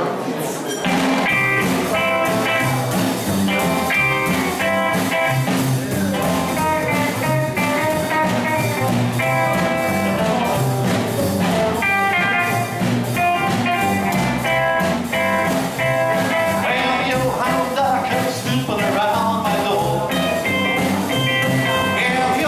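Live rockabilly band playing: electric guitar leading over upright bass and drum kit.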